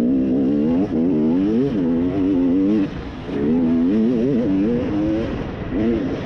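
Dirt bike engine running under throttle, its pitch rising and falling as the rider works the throttle, with a brief drop-off a little before halfway before it pulls again.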